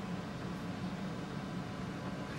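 Steady low hum with a faint hiss, unchanging throughout: background room noise, with no distinct sounds.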